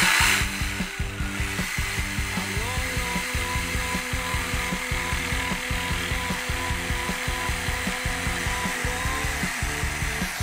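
Corded jigsaw cutting through a hardwood cabinet face frame: the motor runs steadily, with a fast rattle of blade strokes, and its pitch lifts slightly about two and a half seconds in.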